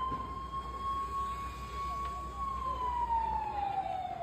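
Emergency vehicle siren in a slow wail: one clear tone that holds steady, then slides down in pitch over the last second or so.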